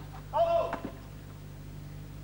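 A single short shouted call on a tennis court, a line official's call just after the ball is struck, which stops the point. A couple of light knocks follow it.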